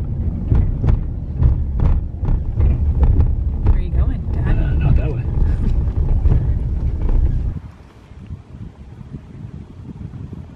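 Truck cabin noise while driving on a wet mountain road: a loud, low rumble of engine and tyres with many small knocks and rattles. About seven and a half seconds in it drops away sharply to quieter wind noise outdoors.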